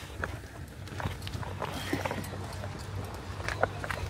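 Scattered knocks, clicks and shuffling as people climb out of a van through its open sliding door, with a sharper knock about three and a half seconds in, over a steady low hum.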